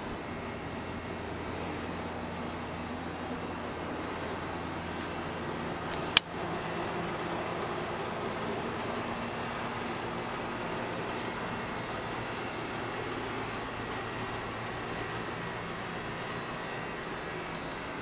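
Steady background hum and hiss, with one sharp click about six seconds in.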